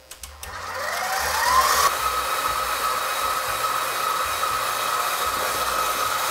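Stand mixer motor starting up, its whine rising in pitch over the first two seconds and then running steadily. The wire whisk is beating egg whites and sugar into meringue.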